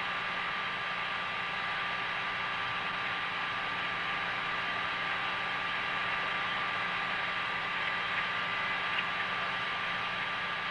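Steady hiss and hum with several faint steady tones: the background noise of the Apollo 8 crew's onboard voice tape recording, with no one talking.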